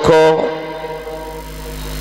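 A man's voice through a microphone and loudspeaker system, holding one long, steady chanted note that slowly fades: the drawn-out last syllable of a word in a melodic, intoned introduction.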